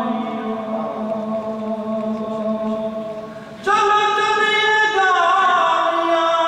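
A man's voice chanting an Islamic devotional recitation in long held notes through a microphone. A low held note fades over the first few seconds, then about three and a half seconds in a louder, higher phrase begins and steps down about a second later.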